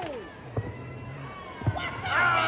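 A few sharp stepping hits from a step team, stomps and claps on a hard arena floor, one about half a second in and a quick pair near the end. Crowd voices and cheering die down at the start and swell again just before the end.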